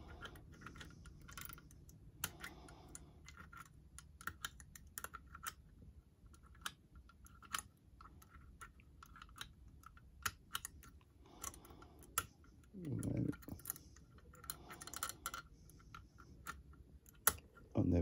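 Faint, irregular small metallic clicks and scrapes of a homemade pick and tension wire working through the lever pack of an old two-lever mortise sash lock, as the levers are lifted one by one to throw the bolt.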